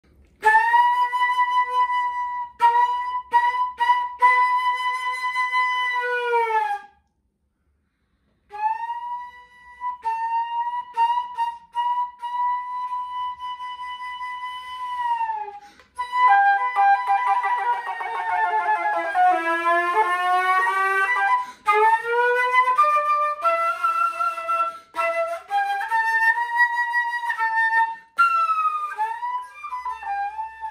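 Solo flute fitted with a Glissando Headjoint playing a slow blues. Two long held notes each sag in pitch as they end, with a short silence between them. After that the pitch sweeps down and back up in long slides, then moves in stepped notes that glide from one to the next.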